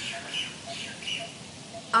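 A bird chirping in the background, a series of short high calls about two a second, over a faint steady background hiss.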